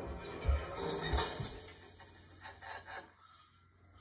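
Film soundtrack music playing from a television, with two heavy low booms in the first second and a half, fading to quiet about three seconds in.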